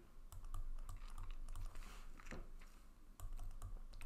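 Faint, irregular taps and clicks of a stylus writing figures on a pen tablet.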